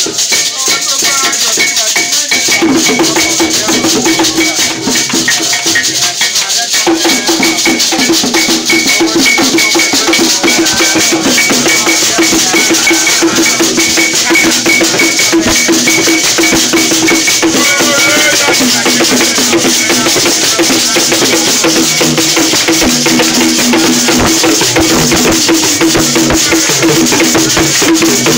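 Traditional percussion: beaded gourd rattles shaken and an iron bell struck in a steady repeating rhythm, with hand clapping and voices. The rhythm fills out a couple of seconds in.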